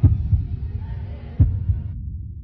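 Heartbeat sound effect: deep double thumps, twice, over a low throbbing drone.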